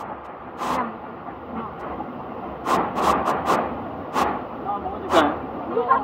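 Steady rushing of a muddy river flowing over and between rocks, with several short, sharp noises over it.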